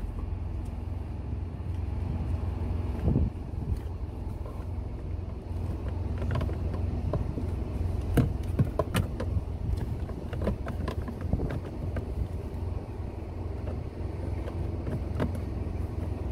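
Hard plastic clicking and knocking as a cabin air filter cover piece is handled and pushed into its slot in the truck's dash, with several sharp clicks in the middle. A steady low hum runs underneath.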